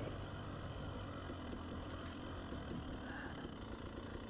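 Dirt bike engine running steadily as the bike rolls along a trail.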